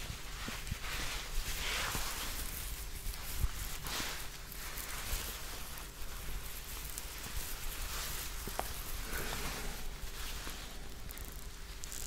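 Rambutan fruits being handled close to the microphone: soft rustling and scratching of their hairy rinds, with a few faint ticks.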